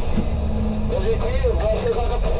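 Volvo B9R coach's rear-mounted diesel engine and tyres giving a steady low rumble inside the cab at highway speed. About a second in, a voice comes in over the rumble.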